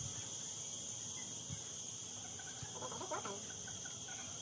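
Steady high-pitched insect chorus, with a short bird call about three seconds in.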